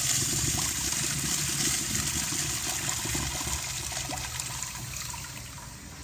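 A restroom plumbing fixture flushing: a rush of water, loudest at the start, that slowly tapers off and dies down near the end.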